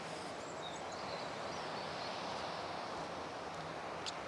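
Steady rushing outdoor background noise, such as breeze and distant surf, with a few faint high bird chirps in the first second or so.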